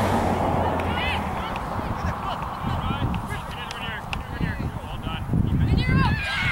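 Geese honking in a scattered series of short calls, over wind rumbling on the microphone.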